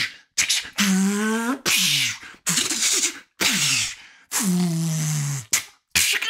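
A man making fight sound effects with his mouth: a run of short hissing whooshes and hits, broken by two drawn-out vocal cries, one about a second in and a longer one near the end.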